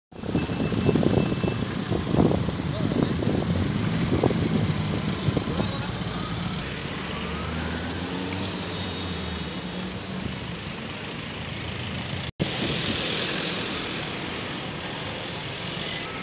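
Road traffic on a busy town street, heard from a slowly moving vehicle with its engine running steadily. Wind buffets the microphone with loud, irregular low rumbles over the first five seconds. The sound cuts out briefly about twelve seconds in.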